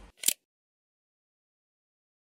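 A brief hissing burst about a quarter second in, then dead silence with no room tone at all.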